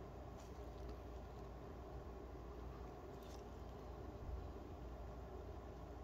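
Quiet room tone with a steady low hum, broken by a few faint clicks and rustles from nitrile-gloved hands turning an epoxy-coated bead mask.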